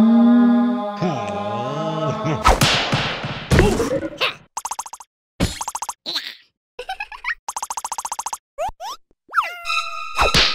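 Cartoon sound effects: a drawn-out pitched vocal note for the first couple of seconds, then a few loud hits, then quick rapid-fire fluttering pulses broken by short boing-like rising and falling glides.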